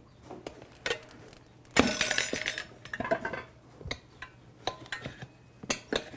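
Metal tire spoons clinking and scraping against a spoked dirt-bike rim as they lever the rear tire's bead off, in a series of sharp clinks. A longer scraping rattle about two seconds in is the loudest sound.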